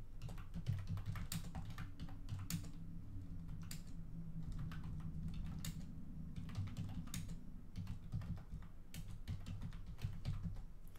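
Typing on a computer keyboard: irregular key clicks, in short runs with brief pauses, over a low steady hum.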